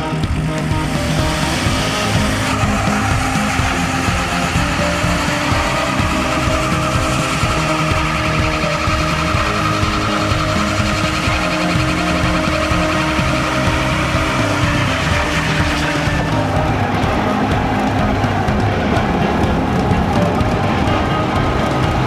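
Loud background music, steady throughout, with a change in its texture about two-thirds of the way through.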